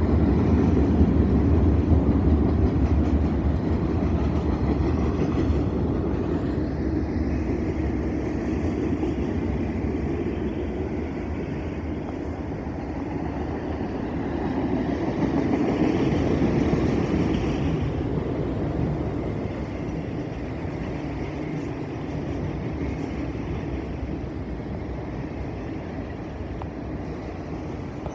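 Freight train cars rolling past on steel rails: a continuous rumble of wheels on track that fades gradually, swelling once a little past the middle.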